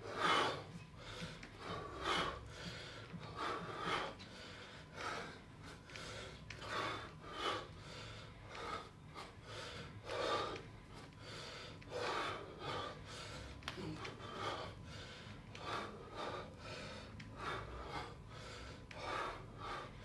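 A man breathing hard through a set of kettlebell swings: a short, forceful puff of breath with each swing, repeating roughly once a second.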